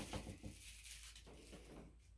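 Faint rustling and light, irregular taps, with a slightly louder scuffle about a second and a half in.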